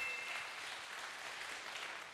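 Audience applauding, the clapping dying away steadily.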